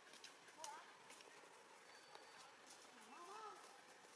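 Near silence: faint outdoor ambience with scattered soft clicks. Two brief, faint calls that rise and fall in pitch come about half a second in and again a little after three seconds.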